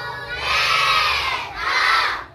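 A class of young children shouting together in chorus, in two loud phrases, the second ending near the end.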